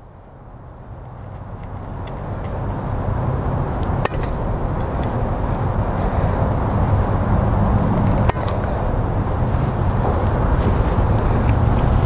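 A low background rumble grows steadily louder throughout and is the loudest sound. Two sharp clicks of pet nail clippers cutting a rabbit's nails come about four and about eight seconds in.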